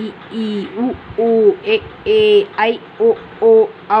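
Speech only: a voice reciting Tamil vowel sounds one at a time, each syllable held briefly on a nearly level pitch, with short pauses between them.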